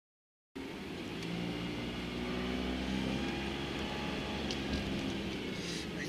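Dead silence for the first half second, then the steady hum of a car's engine and road noise heard from inside the cabin, with a few light ticks near the end.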